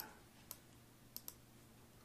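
Three faint computer clicks against near silence: keys or mouse buttons used to set values in the software.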